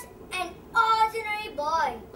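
A child's high voice singing in short phrases, with held notes and swooping rises and falls in pitch.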